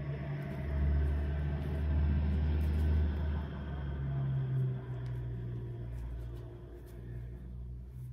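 A low, steady rumble that swells about half a second in and slowly fades toward the end.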